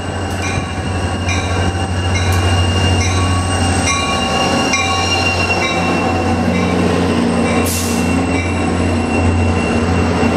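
Diesel locomotive pulling a commuter train into a station platform and passing close, its engine running under a high, steady squeal from the wheels and brakes, getting louder as it comes alongside. Through the first half, a short ringing tone repeats about every three-quarters of a second.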